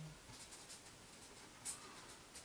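Pen scratching faintly on paper as someone writes, a few soft strokes followed by one sharper scratch near the end.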